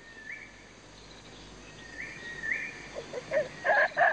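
Quiet rainforest background with a few faint, short, rising bird chirps in pairs. Near the end a gorilla gives a quick series of loud, repeated calls.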